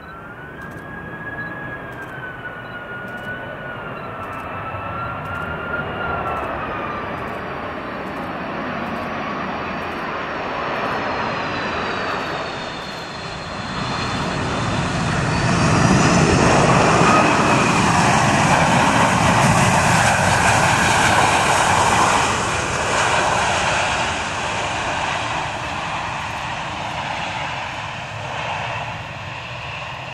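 Boeing 757-200 twin jet on final approach, its engine whine wavering up and down. About halfway through it touches down, and a loud rush of reverse thrust builds during the rollout, then dies away as the aircraft slows.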